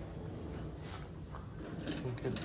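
Steady low room hum with a few faint, soft footsteps on carpet.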